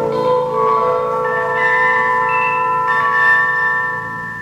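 Live instrumental music: held notes enter one after another and ring on together as a sustained chord, the final moments of the piece. The sound begins to fade near the end.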